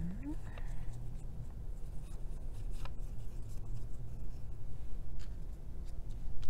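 Faint rubbing and rustling of paper as fingers press a glued paper cutout onto construction paper, with a few light taps, over a low steady hum.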